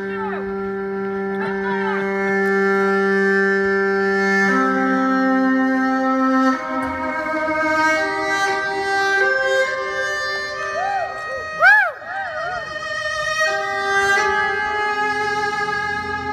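Solo violin playing a slow melody of long held notes that step upward. A brief loud sound cuts in about three-quarters of the way through.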